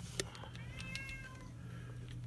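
A single click, then about half a second in a short animal call lasting about a second, rising and then falling in pitch, of the meowing kind.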